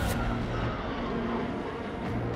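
Fighter jet in flight: a steady low jet-engine rumble with a faint whine that slowly falls in pitch.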